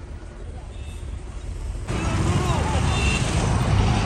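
Low engine rumble inside a moving van, then about two seconds in an abrupt switch to louder roadside traffic noise from passing vehicles.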